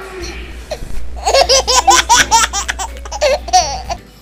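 A woman laughing loudly in a long run of quick, repeated ha-ha bursts, about five a second, starting about a second in and lasting nearly three seconds.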